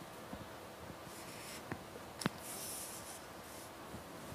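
Faint writing on a lecture board: two stretches of scratchy strokes, with a couple of light taps around two seconds in.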